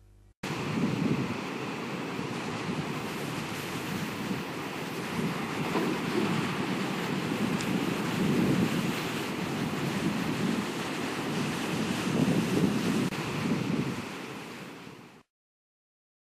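Sea surf: waves washing in with a steady rushing noise that swells and ebbs every couple of seconds. It starts suddenly, fades near the end and cuts off.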